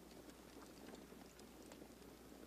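Near silence: a faint steady hiss with a few faint ticks.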